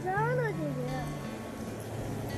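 A girl's short, high-pitched voice that rises and then falls once, followed by a fainter short sound about a second in, over soft background music.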